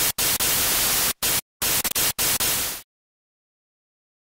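Loud static hiss in a rapid string of bursts that switch on and off abruptly, then cut off dead a little under three seconds in.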